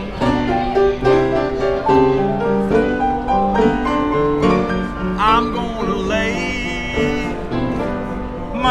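Upright street piano played as a slow blues, with chords and moving bass notes throughout. From about five seconds in, a high, wavering held note rides over the piano for about two seconds.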